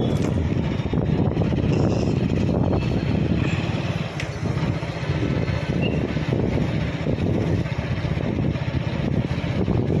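Wind rushing over the microphone together with the road noise of a moving vehicle: a loud, steady low rumble that eases briefly about four seconds in.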